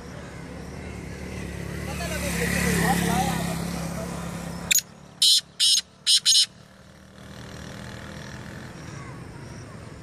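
A caged black francolin calls once near the middle: a loud phrase of five short, harsh notes in under two seconds. Before it, a motorcycle engine hums, rising and then fading as it passes.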